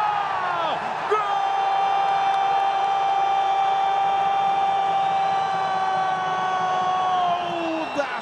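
A Brazilian TV football commentator's long, drawn-out goal shout, one syllable held on a steady pitch for about six seconds and falling away at the end, over crowd noise in the arena.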